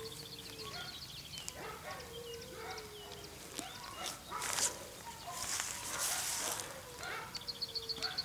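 A young puppy whining in long, drawn-out notes, three times, with a rustling sound in between.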